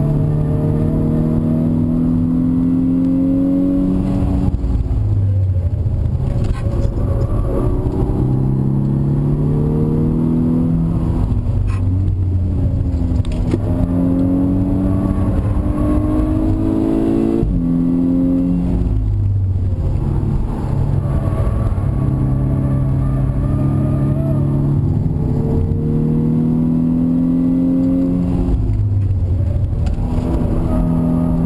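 Turbocharged four-cylinder engine of a 2011 VW Golf VI R heard from inside the cabin under hard acceleration. Its pitch climbs in repeated sweeps and drops abruptly at each gear change, about three times, over constant road and wind noise.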